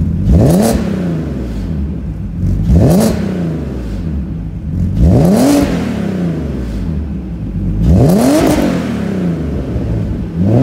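Alfa Romeo 156 GTA's 3.2-litre V6 blipped four times from idle, each rev rising sharply and dropping back, about every two and a half seconds. It breathes through an Orque straight pipe in place of the catalytic converter and an Orque rear muffler.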